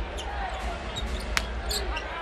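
Basketball being dribbled on a hardwood court over the steady murmur of an arena crowd, with one sharp smack a little under a second and a half in.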